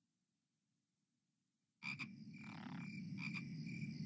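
Frogs croaking in a night swamp ambience on a film soundtrack, starting suddenly about two seconds in after silence, with a high repeated chirping above a low steady hum.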